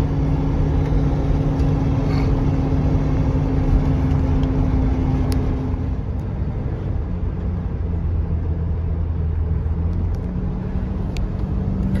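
Inside the cabin of a 1978 Mercedes-Benz 450 SL on the move: its V8 engine runs steadily under road and tyre rumble, fairly quiet for a convertible. About halfway through, the engine note drops lower, and it rises a little near the end.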